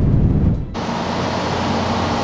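A low whooshing rumble that lasts under a second, then steady street noise cuts in suddenly: an even traffic hiss with a low hum underneath.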